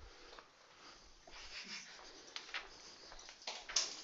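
Quiet room with a few faint, sharp clicks and soft rustling, about four clicks spread through the second half.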